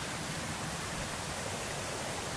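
Steady, even rush of flowing water from a spring-fed stream.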